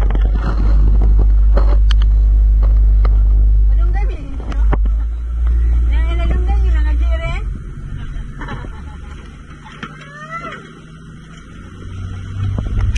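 Motorboat under way on open sea: a deep, steady rumble of the engine and wind buffeting the microphone, which eases after about seven seconds.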